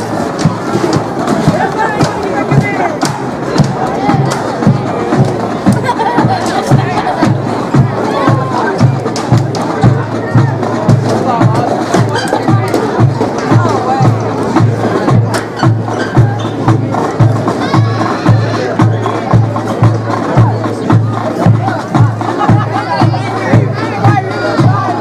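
Marching band drum cadence: a steady bass-drum beat about twice a second, starting a couple of seconds in, keeping time for the marching band, under crowd chatter from the stands.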